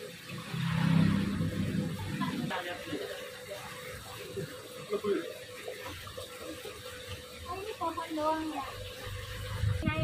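Water splashing and trickling from an aquarium filter, with a thin steady hum and indistinct voices in the background.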